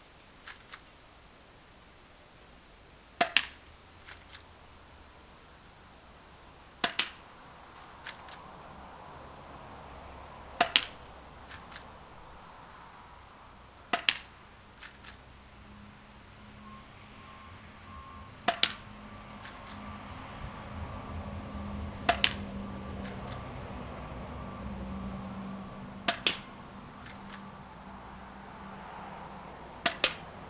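Spring-powered Beretta 92 airsoft pistol firing single shots, about one every three to four seconds, each a sharp snap followed by a couple of faint ticks. A low steady hum swells in the background in the second half.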